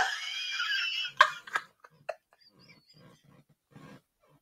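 A woman's laughter trailing off: a high, wheezing squeal for about a second, a few short gasping bursts, then almost nothing until a faint breath near the end.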